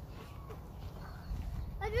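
Wind buffeting the phone microphone, a steady low rumble, with a child starting to speak near the end.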